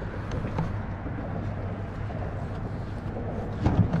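Boat motor running with a steady low hum, over wind and water noise on the microphone, with a short run of knocks near the end.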